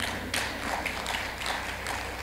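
A few irregular sharp taps, roughly eight in two seconds, over a steady low hum.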